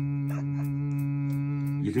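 A man imitating a vacuum cleaner with his voice: one long, steady droning hum held at a single pitch.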